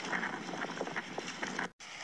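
Wind noise on a phone microphone carried on a moving motorcycle, a steady rushing, which cuts out abruptly for a moment near the end.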